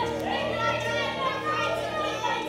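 Several voices praying aloud at once, partly in tongues, over soft sustained chords from a Roland keyboard.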